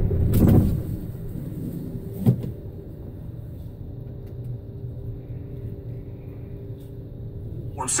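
A car engine idling, heard from inside the cabin as a low steady hum, with a single sharp knock about two seconds in.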